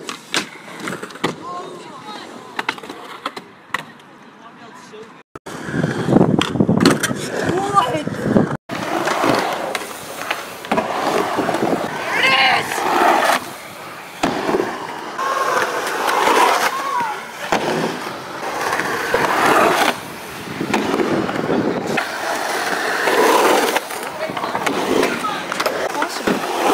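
Skateboards rolling and clacking on wooden ramps and concrete, with sharp board and truck impacts. The first few seconds are quieter, with scattered sharp clicks; from about five seconds in, the rolling and impacts are louder and denser.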